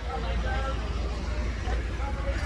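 Roadside traffic rumbling steadily, with faint voices in the background during the first second.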